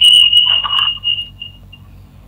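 A steady high-pitched whistle on a caller's telephone line, fading out about a second and a half in, with faint speech under it about half a second in.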